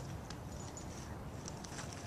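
Quiet outdoor background: a faint steady hiss and low rumble with a few light ticks, and no wind.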